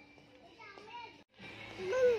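A young child's voice: short babbling sounds, a break, then a louder call near the end that rises and falls in pitch.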